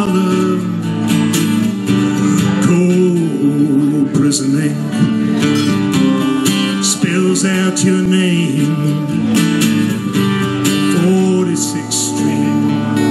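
A slow country song played live on strummed acoustic guitar with keyboard accompaniment.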